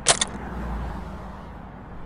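Detonator triggered: a quick cluster of sharp clicks right at the start, then only a low steady background hum, with no explosion following.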